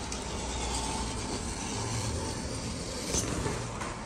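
Wallpaper pasting machine in use: pasted wallpaper rubbing as it is pulled across the machine and trimmed. There is a brief louder scrape about three seconds in.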